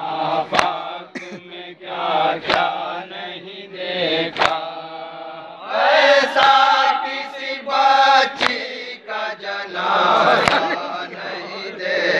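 Group of men chanting a noha, a Shia lament, in unison through a microphone. A sharp slap of hands striking chests in matam sounds about every two seconds.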